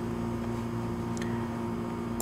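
Steady low hum with a faint hiss, an unchanging background drone of the recording in a pause between spoken sentences.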